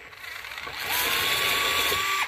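DeWalt DCF682 8V gyroscopic cordless screwdriver running and backing a screw out of a sheet-metal service panel. The motor whine rises in pitch over the first second, then holds steady with a gritty mechanical rasp.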